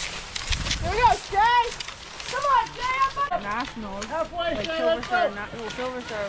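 Several people shouting and calling out encouragement, the voices overlapping and rising and falling in pitch, with a brief low rumble about half a second in.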